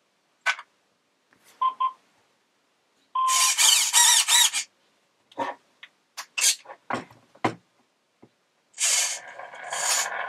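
Hobbywing QuicRun Fusion SE brushless motor/ESC combo in a Tamiya Scania chassis being switched on: a click, two short start-up beeps, then the motor and drivetrain running in short bursts as the throttle is worked, with scattered clicks between.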